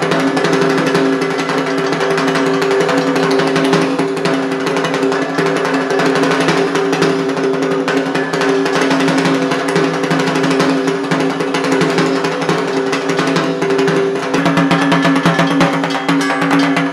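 Dhak, the large Bengali barrel drum, beaten with sticks in a dense, fast, continuous rhythm, with steady ringing tones underneath that shift in pitch near the end.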